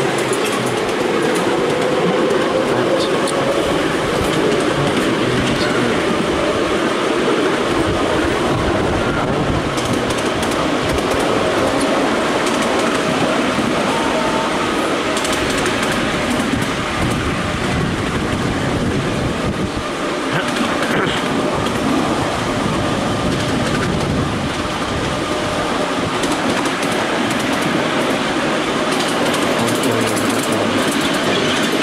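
Ride-on miniature railway train, hauled by a miniature BR Class 31 diesel-outline locomotive, running along its track. The wheels rumble and clatter steadily on the rails, heard close up from a passenger car.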